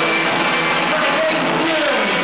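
Live rock band playing loudly, with an electric guitar lead whose notes bend and slide in pitch over the band.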